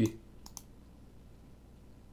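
Two quick clicks at a computer about half a second in, right after the end of a spoken word; then faint room tone.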